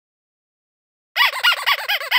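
Channel intro sound effect: starting about a second in, a quick run of high chirps, each rising and falling in pitch, about eight a second.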